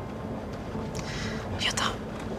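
Steady low road rumble inside a moving car's cabin, with a woman softly saying "Ya da" near the end.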